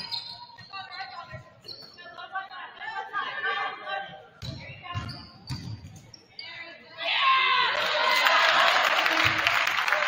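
A basketball is dribbled on a hardwood gym floor with a few voices calling out. About seven seconds in, the crowd breaks into loud, sustained cheering as the home team scores a basket.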